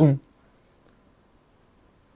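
The last syllable of a man's speech, then a quiet pause with a few faint, short clicks a little under a second in.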